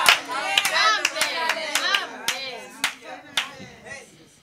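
Hand clapping in a steady rhythm, about two claps a second, with voices calling out over it; both die away near the end.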